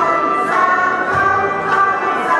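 Music with a group of voices singing a melody in held notes.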